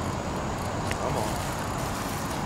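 Steady outdoor background noise, an even hiss with no clear source, with a single faint click about a second in.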